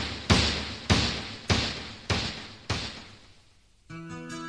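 A sharp percussive hit in a song intro, repeating as a fading echo about every 0.6 seconds, each hit ringing on and quieter than the last until it dies away near the end.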